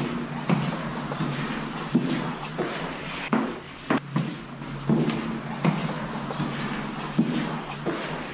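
Amplified camera-microphone audio: a dense whispering hiss, like several voices whispering at once, over a steady low hum. Footsteps fall about every two-thirds of a second.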